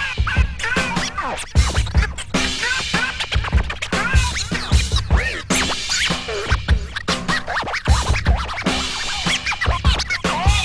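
Vinyl records scratched by hand on turntables, many quick rising and falling scratch sounds cut in and out by the mixer, over a steady drum beat with a kick drum.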